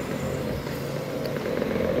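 Street traffic: a motor vehicle's engine running steadily, getting louder toward the end as it approaches.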